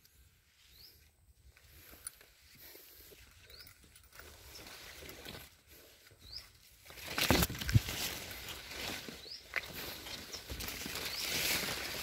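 Faint outdoor ambience: soft rustling and handling noise with a few short, high, rising chirps, and a louder rush of noise about seven seconds in.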